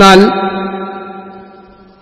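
A man speaking a single word, "ennal", in a heavily reverberant voice; the word's pitch hangs on as a long echo that slowly fades away.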